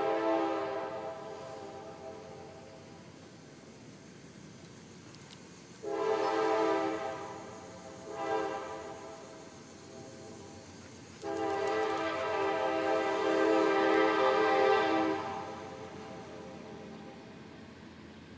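Train horn sounding a sequence of steady blasts: one that fades out in the first two seconds, another at about six seconds, a short one about two seconds later, then a long one of about four seconds. It is the long, long, short, long pattern of the grade-crossing signal.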